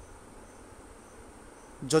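A pause in a man's speech: faint steady high-pitched background sound with soft short chirps about twice a second. His voice starts again near the end.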